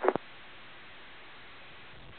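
Low, steady radio hiss from an airband receiver between transmissions. The clipped end of a brief spoken radio transmission is heard in the first fraction of a second.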